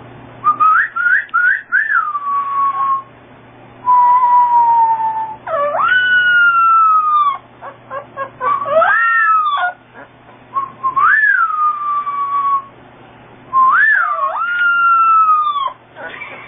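Young puppy howling: about six high, thin howls in a row, each jumping up in pitch and then sliding slowly down, with short breaks between them.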